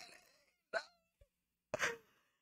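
A woman's short, quiet moans between near-silent gaps: a brief sound with a falling pitch about a second in and another with a breath near the end, in dismay that the song was too short.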